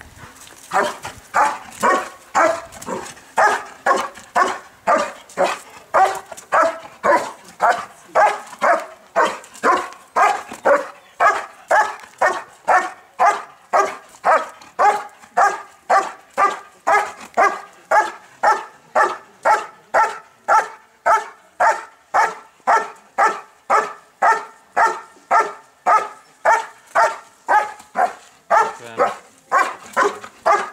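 Working dog barking steadily and rhythmically at a helper held in a hiding blind, about two barks a second without a break: the hold-and-bark in IPO protection work.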